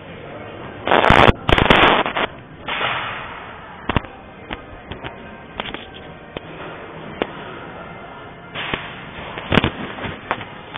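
Handling noise from a handheld camera's microphone: loud rubbing bursts about a second in, then a string of single sharp knocks, with more rubbing near the end.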